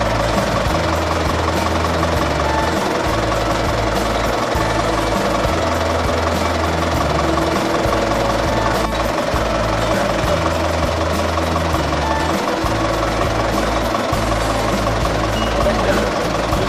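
Background music with a low bass line that steps between notes every second or two, over a dense steady background.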